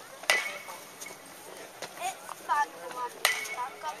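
Two sharp cracks of a bat striking a baseball during batting practice, about three seconds apart, each followed by a brief ringing tone.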